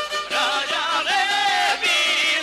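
Live Bosnian izvorna folk music from a šargija band, its melody bending and wavering in pitch, with one longer held note just past the middle.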